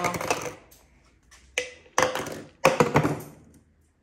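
Plastic baby bottles knocked and set down on a stone countertop as a capuchin monkey handles them: a few separate sharp knocks and clatters, the loudest about two seconds in and again near three seconds.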